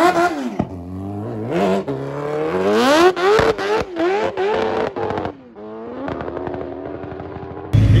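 Kawasaki Ninja H2's supercharged inline-four launching down a drag strip, the revs climbing and dropping back again and again through a run of quick upshifts. It fades as the bike pulls away, then cuts off abruptly near the end.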